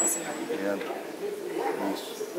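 Men's voices talking and calling out to one another in broken phrases.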